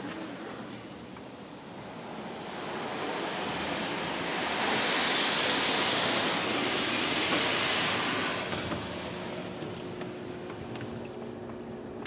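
Automatic car wash spray hitting the car, heard from inside the cabin: a rushing hiss that swells as the spray passes over, peaks in the middle and fades away. This may be the wash's final spot-free rinse.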